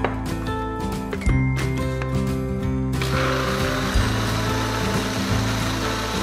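Countertop blender switched on about halfway through and running steadily, blending orange juice with demerara sugar, over background music.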